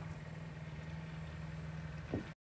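A steady low hum with a faint background hiss, engine-like in character, with no speech.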